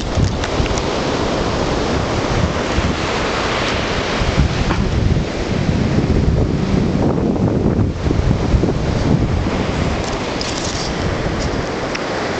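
Wind buffeting the microphone in gusts over the steady wash of ocean surf on a beach.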